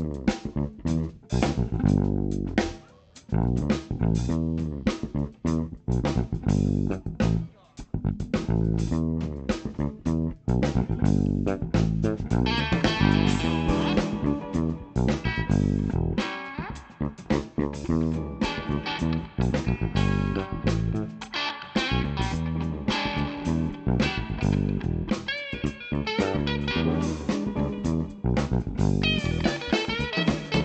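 A live rock band playing without vocals: drum kit, bass guitar and electric guitars, with the bass notes and drum hits strongest. The guitar parts grow fuller about twelve seconds in.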